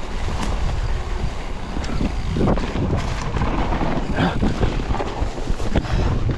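Wind buffeting the microphone while a mountain bike rolls fast down a dirt trail covered in dry leaves. The tyres keep up a steady rumble, and a few sharp knocks and rattles come from the bike over bumps.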